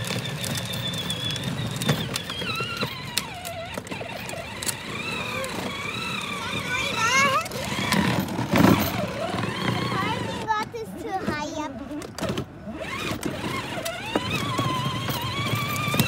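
A child's wordless voice over the steady running of a battery-powered ride-on toy truck rolling on asphalt, with a louder moment near the middle.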